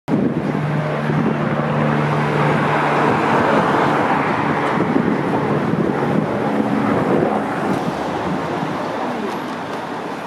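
Road traffic passing close by: a motor vehicle's engine hum and tyre noise on the street, swelling through the middle and easing off near the end.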